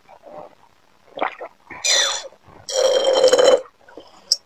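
Drink being sucked up through a straw: a few short soft sips, then a loud gurgling slurp near the middle and a longer, louder slurp of about a second with a steady buzzing pitch.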